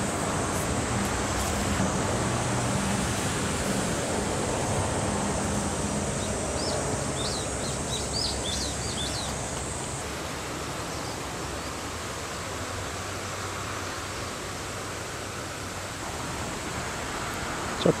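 Steady outdoor background noise with a low hum underneath, and a few short bird chirps between about seven and nine seconds in.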